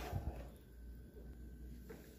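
Near-quiet room tone with a faint steady low hum; a little faint noise fades out within the first half second.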